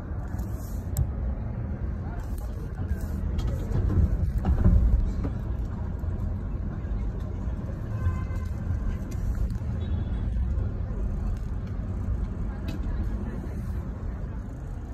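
Steady low rumble of engine and road noise heard from inside a car moving slowly through city traffic. It swells louder for a moment about four seconds in.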